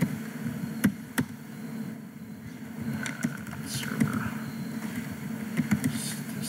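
Computer keyboard being typed on: scattered keystrokes, with two sharp clicks about a second in and lighter taps later, over a low steady hum.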